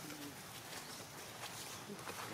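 Quiet outdoor ambience, with one short, low-pitched call right at the start and a fainter one near the end.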